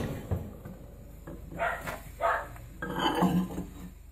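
A microwave oven door swinging open, with a short knock just after the start. A few short, faint noises follow.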